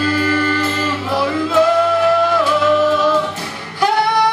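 A vocal group singing live in several-part harmony, holding long notes as chords that shift a couple of times, with a short dip just before a new chord starts at the end.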